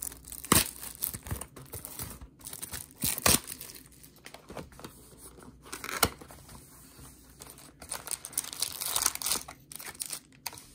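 Clear plastic shrink-wrap being torn and crinkled off a cardboard trading-card hobby box, with the box handled as it comes free. The crackling comes in irregular bursts with a few sharper snaps, loudest about half a second in, around three seconds and at six seconds, quieter for a couple of seconds after that and busier again near the end.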